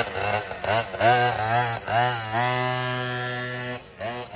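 Small two-stroke engine of a homemade racing scooter revving in quick blips, then holding a steady buzzing note that fades toward the end as the scooter rides away.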